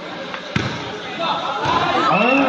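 A volleyball strikes once with a sharp thud about half a second in, just after a fainter tap. Several voices of players and spectators then rise and get louder.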